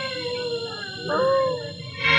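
A high wailing cry drawn out in long, slowly falling notes. One wail fades through the first second, and a second, louder wail starts about a second in.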